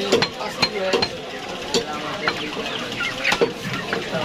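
Large curved cleaver chopping chicken on a wooden stump block: about nine sharp knocks at uneven intervals. Chickens cluck in the background.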